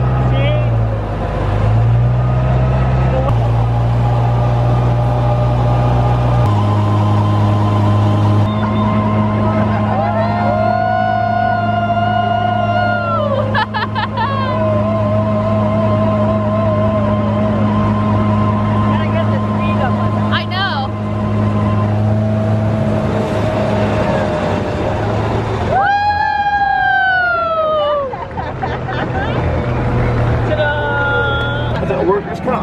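Amphicar's four-cylinder engine running steadily as the amphibious car motors across the water, its drone stepping in pitch twice in the first seven seconds. Two long high calls that slide down at their ends stand out over it, one about ten seconds in and one near the end.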